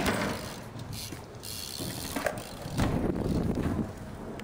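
BMX bike rolling and coasting on a concrete skatepark floor, its rear hub's freewheel clicking over the noise of the tyres. The sound jumps up suddenly at the start and swells louder near the end.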